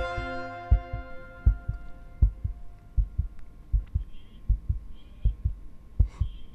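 Heartbeat sound effect: paired low thumps repeating about every three quarters of a second, under a sustained music chord that fades away over the first two seconds.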